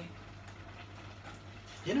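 Quiet lull in a kitchen: a low steady hum and faint room noise. A voice starts right at the end.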